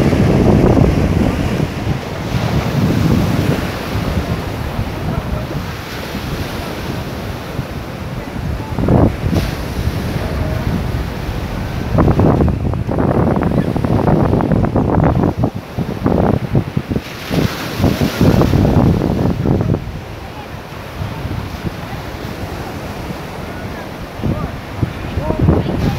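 Small sea waves breaking and washing up a sandy beach, with wind buffeting the microphone in loud gusts.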